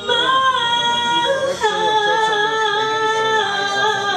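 A woman singing two long sustained notes without clear words, changing note about a second and a half in, over a soft electronic keyboard accompaniment.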